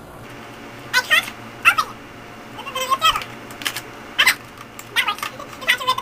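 Plastic razor packaging being pried and pulled open by hand: a string of short squeaks and crackles.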